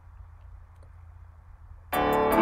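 A faint, steady low hum with nothing else over it, until a music track cuts in suddenly right at the end.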